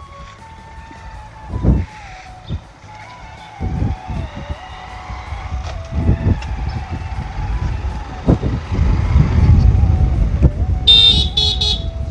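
Outdoor street ambience on a village market road: a low rumble that grows louder toward the end, with scattered knocks and faint music with a wavering tune. Just before the end comes a brief, high-pitched tooting of a few quick notes.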